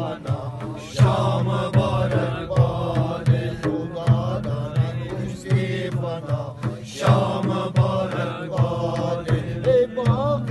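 Men's voices singing a traditional Wakhi welcome song together in a chanting style, over a steady beat on a large frame drum (daf), with a plucked long-necked lute (rubab) alongside.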